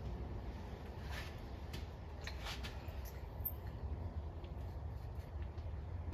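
Faint, steady low rumble of background noise, with a few soft clicks in the first half.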